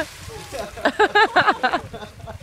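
A burst of laughter: a string of about six quick pitched 'ha' pulses, starting about a second in and lasting about a second.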